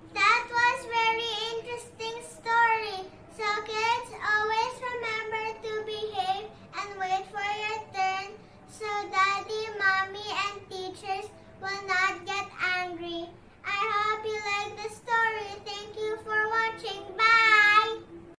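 A young girl singing a song in a string of phrases with short breaks between them.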